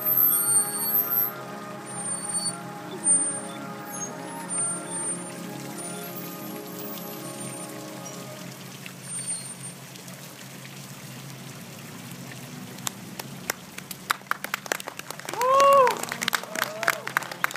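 Marching band holding sustained chords that die away about halfway through. Scattered clapping starts a few seconds before the end, then a loud whooping cheer as the applause begins.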